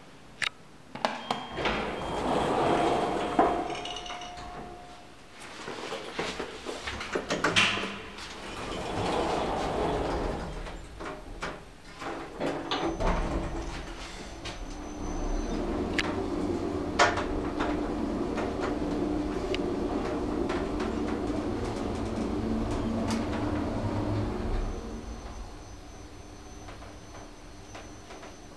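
AS Ascensori SwissLift/Magic machine-room-less traction lift: a click of the call button, the sliding doors opening with a brief tone and then closing, followed by the car travelling with a steady hum for about ten seconds before it quietens near the end as the car stops.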